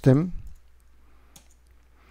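The end of a man's spoken word, then near quiet with a couple of faint computer keyboard keystrokes, the clearest about 1.4 s in, as a typed terminal command is finished and entered.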